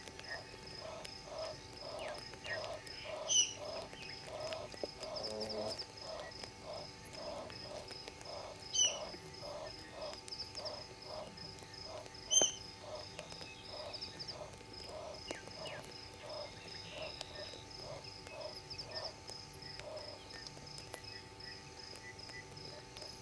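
Night chorus of a frog calling in an even series of low pulses, about two a second, over a continuous high insect trill, likely crickets. Three sharp clicks stand out, about a quarter, two-fifths and halfway through.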